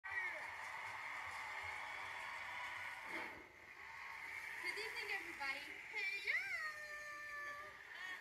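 Speech: a high-pitched voice talking softly, drawing out one long word about six seconds in. A steady background hiss fills the first three seconds.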